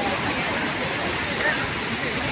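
Steady rush of a large waterfall in spate, heavy brown floodwater pouring down a cliff into its plunge pool, with faint voices of people close by.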